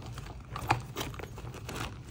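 Hands rummaging inside a handbag: soft rustling and light clicks and knocks of items being pushed in and shifted around, with one sharper click a little after half a second in.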